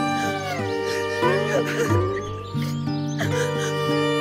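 Background music of held chords that step down in pitch, with cartoon children's voices wailing and sobbing over it.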